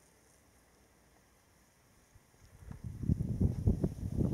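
Near silence, then about halfway through wind starts buffeting the microphone in an uneven low rumble.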